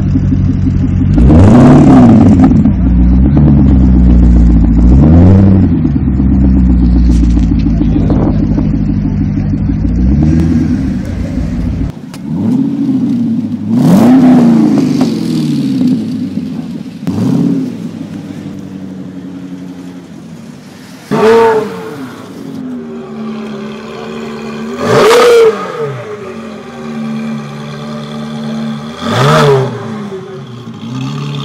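Chevrolet Corvette C6 V8 idling with a steady burble, its throttle blipped about eight times, each rev rising and falling back to idle within a second or so.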